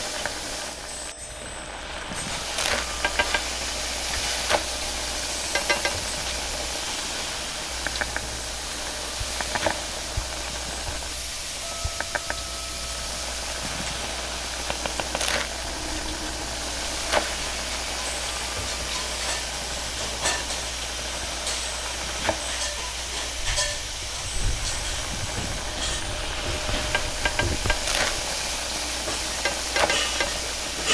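Noodles sizzling in a wok over a gas wok burner, a steady loud hiss with the burner's low rumble beneath it. Sharp metallic clinks come every few seconds as a metal ladle and spatula strike and scrape the wok while tossing the food.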